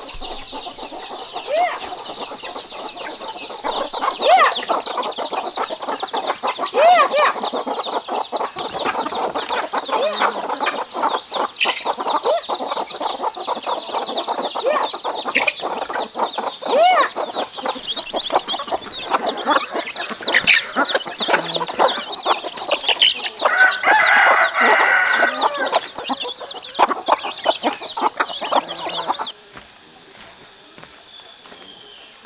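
A flock of chickens clucking continuously, many short overlapping calls. A rooster crows once about two-thirds of the way through. The sound stops abruptly shortly before the end.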